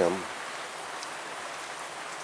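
Steady rain falling, an even hiss with no distinct drops or rhythm.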